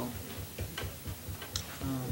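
Quiet room noise with a few faint, sharp clicks during a pause in talk; a man's voice begins near the end.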